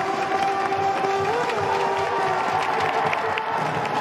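College soccer crowd cheering and applauding, with a steady held, pitched tone over the crowd noise that wavers briefly about a second in.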